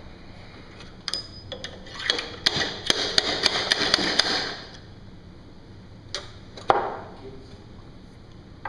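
Hand handling of small hard objects at the lathe: a few sharp clicks, then a couple of seconds of rattling clicks and knocks, then two more separate clicks.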